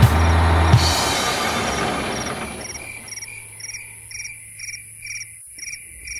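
The song's music fades out over the first two seconds. Then crickets chirp in an even rhythm, about two chirps a second: a cartoon night-time sound effect.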